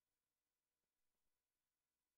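Near silence: a blank stretch of the recording with no audible sound.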